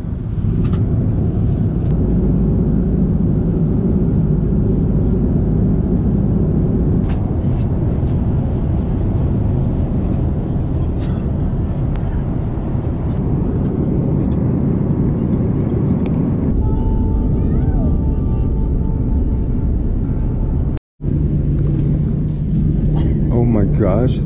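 Steady airliner cabin noise from a window seat beside the wing: jet engines and air rushing past the fuselage, a deep, even rumble during the descent. About twenty seconds in, it cuts out for an instant at an edit, then returns as a steadier low hum.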